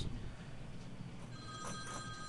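Faint ringing tone of several pitches at once, starting about a second and a half in, over low room noise.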